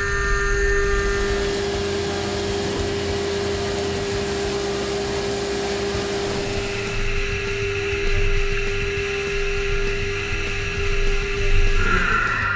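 Haas VF-2SS CNC vertical mill cutting with a 0.25-inch, 45° two-flute chamfer end mill under flood coolant: a steady spindle whine over the spray of coolant and cutting noise. A higher tone joins about seven seconds in.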